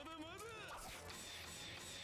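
Faint anime soundtrack: a character's voice saying "Not yet, not yet, not yet!" in the first moment, then quiet background music.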